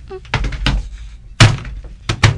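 Radio-drama sound effects: a few sharp knocks, then one loud heavy thud about one and a half seconds in, after a brief vocal sound at the start.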